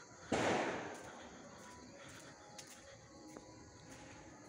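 A single firecracker bang about a third of a second in, its echo dying away within about half a second. Faint background noise follows.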